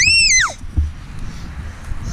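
A girl's short, high-pitched scream that rises and then falls in pitch, followed just under a second in by a low thump.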